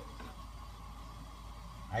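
Water at a rolling boil in a pan on a gas burner: a faint, steady bubbling.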